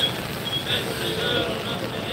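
A car, a yellow taxi, driving past on the rain-wet street, with the voices of a crowd behind it.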